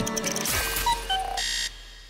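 Outro jingle music ending with a few short electronic beeps and a brief burst, then dying away.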